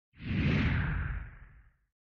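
A whoosh sound effect accompanying a logo reveal: one swell of rushing noise with a low rumble beneath, fading away after about a second and a half.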